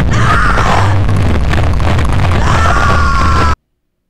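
Loud, distorted horror sound effect, a 'Grudge girl' sounding noise: a rasping, screech-like tone that dips and rises over a heavy low rumble. It cuts off abruptly about three and a half seconds in.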